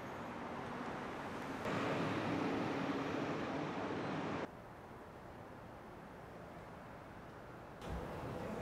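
Road traffic: cars passing along a city street, louder from about two seconds in. The noise cuts off abruptly about halfway through to a quieter, steady ambience.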